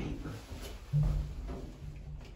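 A low, steady electric hum from the Montgomery KONE hydraulic elevator's machinery starts abruptly about a second in and keeps going.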